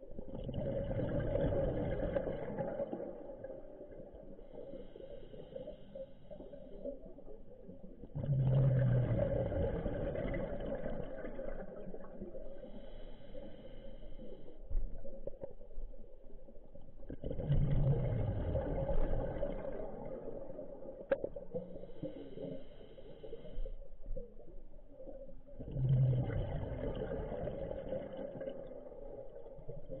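Scuba diver breathing through a regulator: four long exhalations of bubbles, one about every eight to nine seconds, each opening with a low falling rumble, with a quieter hiss of inhalation between them.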